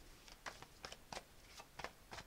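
Faint, irregular soft clicks of a tarot deck being shuffled in the hands, cards slipping against each other.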